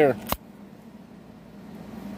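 One sharp metallic click of nickels knocking together as a roll of coins is handled, over a faint steady hum.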